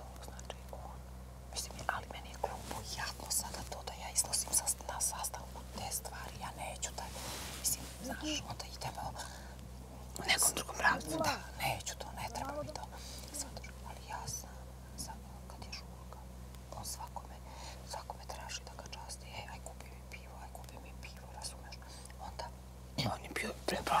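A hushed, whispered conversation between two women, over a steady low hum.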